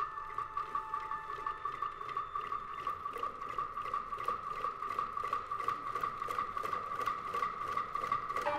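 Chinese traditional orchestra playing: one high note held with a rapid wavering tremolo starts suddenly on the conductor's cue, over a steady pulse of light tapping strikes about three or four a second.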